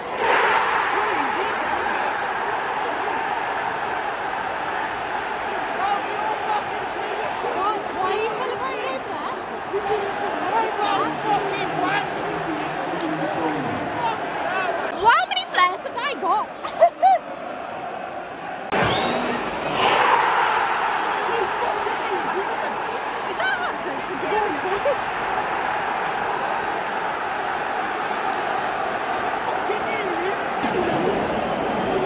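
Football stadium crowd of thousands shouting, singing and chanting, a loud continuous wash of voices. A few sharp claps or bangs close to the microphone stand out about halfway through.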